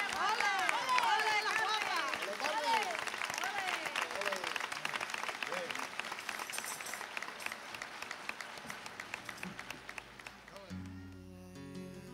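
Audience applause with shouts and cheers, loudest at first and thinning out over about ten seconds. Near the end a solo flamenco guitar begins playing plucked notes.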